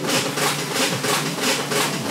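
Newman's Big Eureka motor driving a geared pump, running with an even, rapid beat of several strokes a second.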